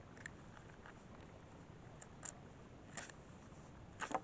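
Faint, sparse ticks and crackles of a Leatherman multitool's locking blade cutting into a thin stick, the clearest around two and three seconds in.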